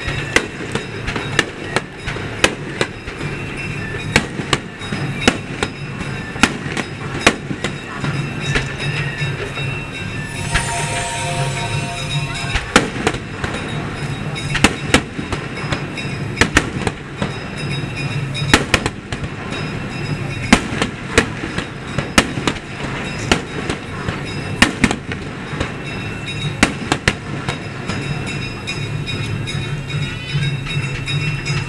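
Aerial fireworks display: shells bursting in an irregular series of sharp bangs, often several close together, over a continuous low background. About ten seconds in there is a brief pitched, hissing effect.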